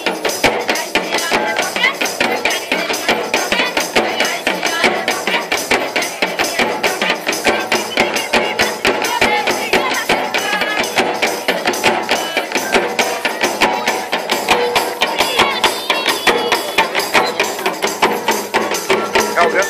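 Live folk music for a tribal dance: drums beating a fast, steady rhythm with jingling percussion, and a wavering melody line above it.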